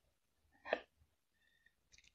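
One brief breath or throat sound from a person, lasting a fraction of a second about two-thirds of a second in; otherwise quiet.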